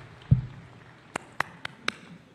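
A dull thump, then four sharp clicks about a quarter of a second apart, over faint background hiss.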